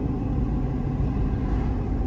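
Steady low rumble of a car driving along an asphalt road, heard from inside the cabin: engine and tyre noise at an even speed.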